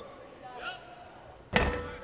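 A basketball from a free throw hitting the front of the metal rim with a sudden clank about one and a half seconds in, then rattling in.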